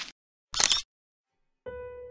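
A camera-shutter click sound effect about half a second in, set between dead silences. Music with single struck, held notes starts near the end.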